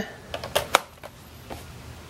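A few short, sharp plastic clicks as a plug-in AC adapter is pushed into a power strip and seated.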